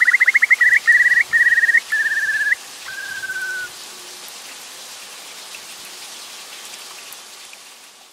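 A bird whistling a series of short trilled phrases, each a little lower than the last, ending in a falling trill about three and a half seconds in. After that only a steady hiss remains.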